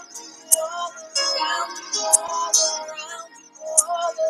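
A woman singing a slow, sustained worship song, her voice holding and gliding between notes, with a few sharp clicks through it.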